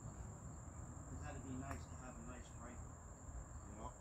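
Insects trilling in a steady, continuous high-pitched drone, with faint, distant men's voices talking now and then.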